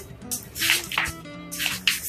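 Background music with steady held notes, and several short rustles of paper as a hardcover picture book's page is handled and turned.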